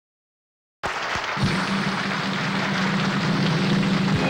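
The soundtrack cuts in abruptly about a second in: a loud, even rushing noise with a steady low hum beneath it, just before the accompaniment music starts.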